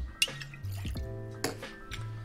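Dry vermouth poured from a bottle into a small metal jigger, with a few drips and clinks, under steady chillhop background music.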